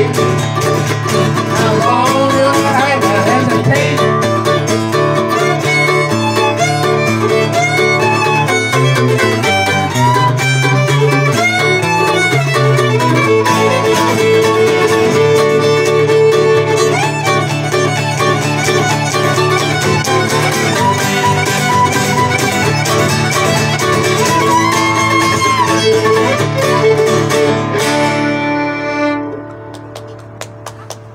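Fiddle, mandolin and acoustic guitar playing an instrumental old-time string-band tune, with the fiddle leading in sliding notes over strummed chords. The tune ends near the end with a last chord ringing out.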